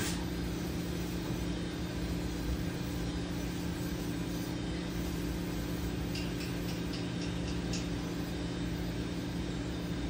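A steady low mechanical hum with two constant low tones, a motor or fan running, and a few faint light ticks about six seconds in.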